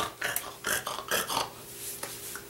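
A man making a quick run of short wordless vocal sounds, acting out a scene in place of words.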